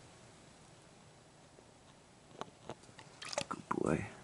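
Near silence, then a few soft clicks and rustles in the second half, close to the microphone, leading into the start of a man's voice at the very end.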